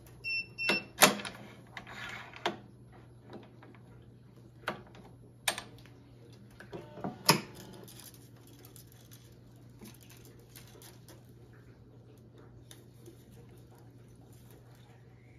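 Sharp clicks and knocks of racket-stringing work on an electronic stringing machine: clamps, machine parts and string handled and snapping against the frame. The clicks come in a cluster in the first couple of seconds, with more around the middle, then only faint handling noise.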